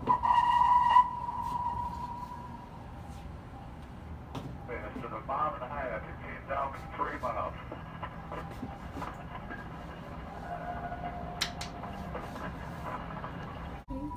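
Indistinct voices in a small room, not close to the microphone, over a steady low hum. A held tone sounds for about a second at the start and fades, and a fainter tone comes near the end.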